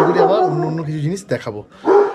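A man's voice speaking close to the microphone, with a long drawn-out vocal sound in the first second.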